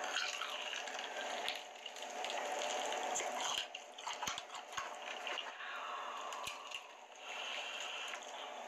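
Close-miked wet chewing and biting of sauce-coated fried chicken, with lip smacks and a few sharp clicks around the middle.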